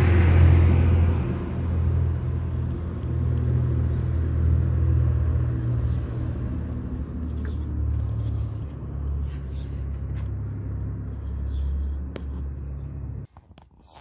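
BMW N52 inline-six engine idling with a steady low rumble, the engine whose rough idle the owner blames on clogged VANOS non-return valve filters. Light handling clicks and knocks come as the camera is worked into the engine bay, and the sound cuts off abruptly shortly before the end.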